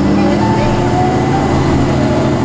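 Interior of a moving city bus: steady running rumble and road noise, with a faint whine above it.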